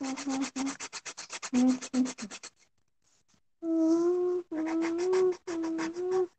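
Rapid back-and-forth scratching of a coloured pencil on paper as the background is coloured in, about eight strokes a second, pausing briefly about halfway. After the pause, a steady pitched hum sounds over the scratching.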